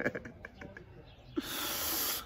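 A man's quiet, breathy chuckling, then a sharp hissing breath through the teeth, just under a second long, near the end.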